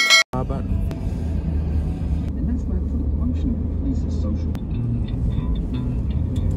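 A short intro jingle note cuts off abruptly. Then comes the steady low rumble of road and engine noise heard inside a moving car.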